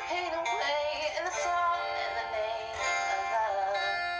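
A woman singing a pop song over a backing track, holding and bending sung notes.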